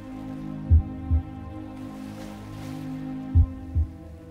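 Meditation music: a sustained drone of steady singing-bowl-style tones, with a low double heartbeat-like thump that comes twice, about two and a half seconds apart.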